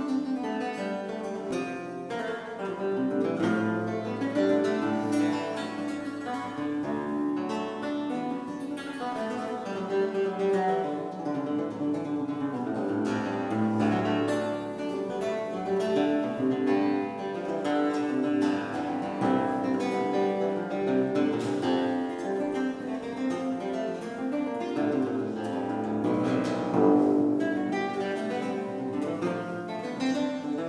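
Solo theorbo played with the fingers: an unbroken stream of plucked notes, with bass notes sounding beneath the melody, in an early-Baroque solo piece.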